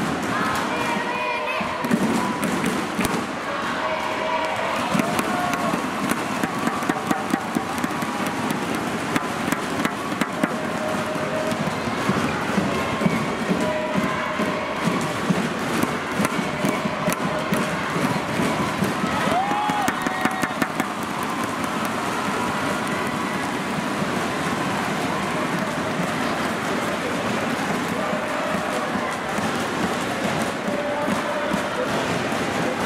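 Crowd in a large indoor badminton arena: a steady din of voices and cheering, with frequent short sharp knocks throughout.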